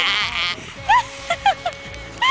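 A breathy outburst at the start, then short high-pitched laughing squeals in quick succession about a second in.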